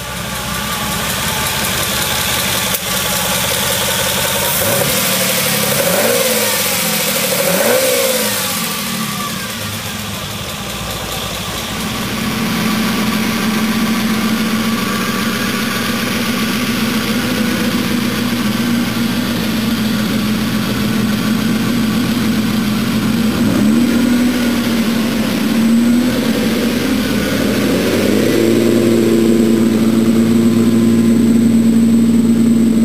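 Ferrari 250 GTO's 3-litre V12 running, revved up and down several times in the first ten seconds, then settling to a steady idle with a couple of short blips near the end. The carburettors are being adjusted, starting from a rich mixture.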